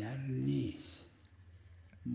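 A man's voice speaking briefly, then a pause of about a second with faint room tone.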